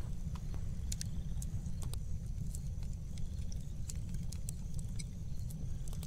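Wood fire burning in a fire pit: irregular sharp crackles and pops over a steady low rumble.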